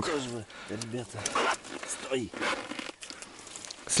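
Quiet, mumbled speech from a man's voice in a few short fragments, with faint handling noise between them.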